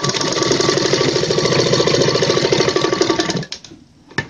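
Straight-stitch sewing machine running at a steady speed, its needle stitching through cotton fabric in a fast, even chatter over a motor hum, then stopping about three and a half seconds in.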